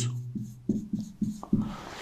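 Felt-tip marker writing on a whiteboard, squeaking in about five short strokes as a word is written.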